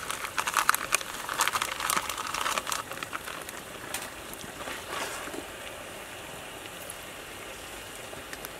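Crinkling, clinking handling noises while seasonings go into a stainless steel pot of raw meat: a dense run of crisp noises for the first three seconds, then a few scattered clicks.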